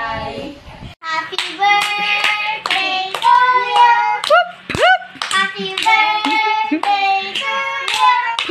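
Young children clapping their hands and singing in high voices, starting about a second in, with a few swooping high notes.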